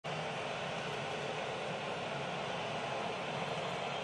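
Steady ballpark ambience: an even, unchanging wash of crowd noise with no single event standing out, the piped-in crowd sound of a stadium whose seats hold cardboard cutouts.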